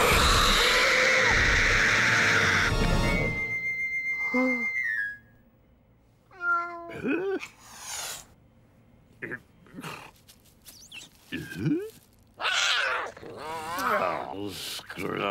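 Cartoon cat's loud, rasping snarl over music for the first three seconds, then a short steady high tone that drops at its end. After that come several short separate cat cries with quiet between them, and a man's mumbling voice comes in near the end.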